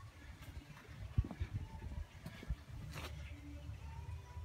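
Faint low rumble and a couple of soft thumps about one and two and a half seconds in: handling noise from a handheld phone camera being carried on foot.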